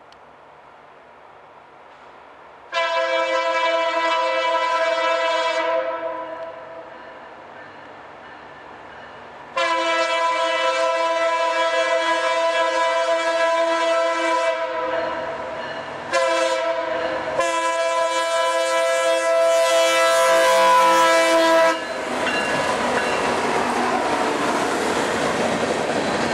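Horn of a Norfolk Southern PR43C locomotive sounding a multi-note chord in the grade-crossing pattern: long, long, short, long, a horn that sounds like a Nathan K3LA. After the last blast the locomotives pass close by with loud engine and wheel noise and rail clatter.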